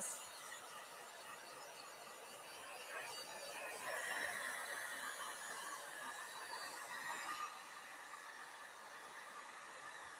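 Faint whine of a heat gun blowing on milk paint, swelling about three seconds in with a steady high tone and dropping back after about seven seconds.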